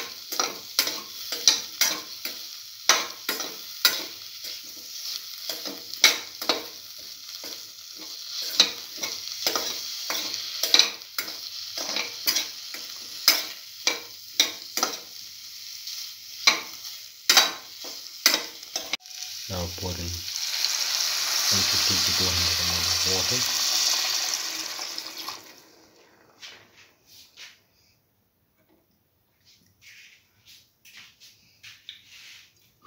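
A spatula stirs tomato, cottage cheese and eggplant in a hot pan, making rapid clicks and scrapes against the pan over steady frying sizzle. About 19 seconds in, a loud steady hiss takes over for about six seconds, as of water hitting the hot pan, then it stops.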